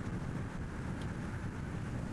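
Steady low rumble of wind and road noise.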